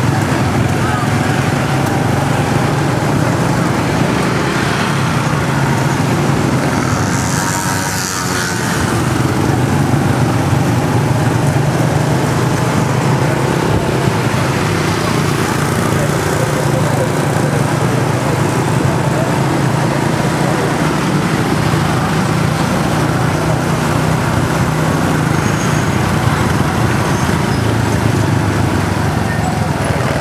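Small motorbike engine running steadily at low speed, with the hum of dense scooter and motorbike traffic around it.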